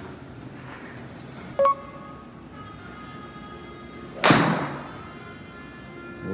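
Golf driver striking a ball in an indoor simulator bay: one sharp crack a little over four seconds in, with a brief ring after it. A short beep sounds about a second and a half in.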